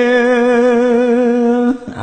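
A Khmer Buddhist monk's solo chanted lament: one male voice holds a long, slightly wavering note, then pauses briefly for breath near the end.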